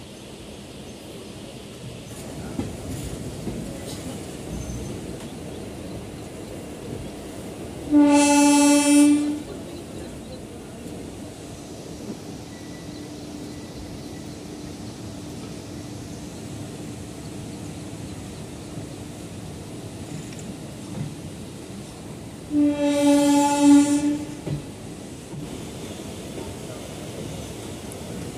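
Locomotive horn sounding two blasts of a bit over a second each, about fourteen seconds apart, over the steady rumble and rail clatter of a passenger train on the move.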